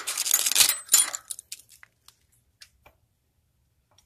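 Loose steel hardware clinking and rattling as a broken U-bolt from the antenna's mast mount is handled against the pipe. There is a dense clatter for about a second, then a few scattered clicks.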